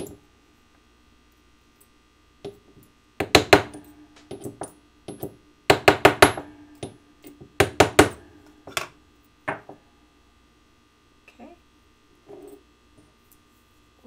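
Rawhide mallet striking a steel dapping punch, driving a small metal piece into a dapping block to dome it. The blows come in quick groups of three to five, then single blows, tapering to a few faint taps near the end.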